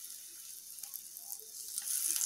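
Raw banana slices sizzling faintly in shallow oil in a nonstick pan: a soft, steady high-pitched hiss.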